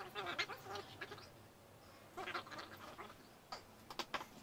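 Short squeaks of hands rubbing and sliding on the plastic body of a large Bison rotomolded cooler as it is handled. The squeaks come in two clusters, in the first second and again about two seconds in, with a sharp click near the end.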